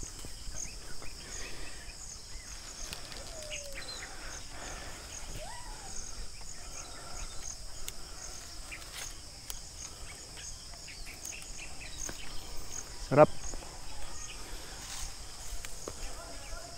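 Insects chirping steadily in the background: a continuous high-pitched buzz with a regular pulsing chirp, under faint rustling and distant voices.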